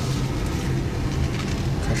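Steady low engine and tyre hum heard from inside the cabin of a Subaru Outback with its 2.5-litre flat-four, as the car rolls at idle speed into a tight U-turn.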